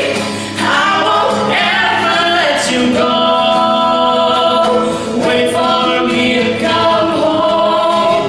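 A male and a female voice singing a duet together in harmony, with long held notes, over a strummed acoustic guitar.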